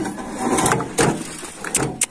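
A metal wheelbarrow being pushed from its side back upright onto its wheel and legs: its pan scrapes and rattles, with a sharp knock about a second in and another near the end.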